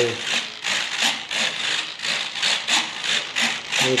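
Small metal-gear RC servos driving the plane's ailerons back and forth, a rhythmic rasping buzz about three times a second.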